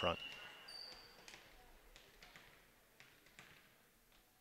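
A volleyball bounced several times on a hardwood gym floor by a server before her serve, faint knocks about two or three a second.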